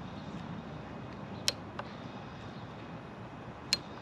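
A long rod turning the rebound adjuster on an InMotion V13 Challenger's suspension. It gives only a low steady background and three faint light ticks, about one and a half seconds in, just after that, and near the end. The adjuster spins freely with no click per turn, so turning it gives no audible cue.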